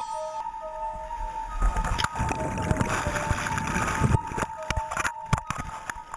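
Background music of long held notes over the rushing white water of a rapid; from about one and a half seconds in, a loud rush of churning water and splashing takes over for a couple of seconds as the raft capsizes and goes under, with a few sharp knocks.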